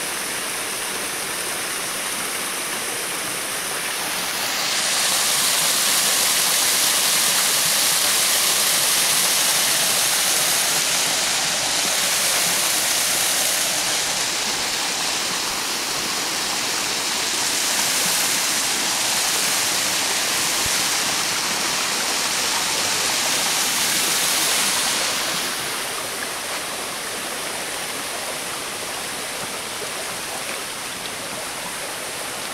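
Shallow creek water running over rock ledges and riffles, a steady rushing. It grows louder a few seconds in and eases back again near the end.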